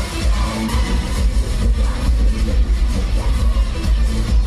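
Loud electronic dance music with a heavy, continuous bass.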